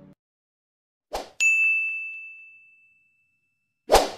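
Animated-graphic sound effects: a short whoosh, then a single bright bell-like ding that rings and fades over about a second and a half, then another whoosh near the end as the subscribe-button animation comes in.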